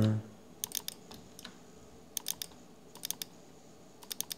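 Computer mouse button clicking in quick pairs, about five double-clicks spread over the few seconds.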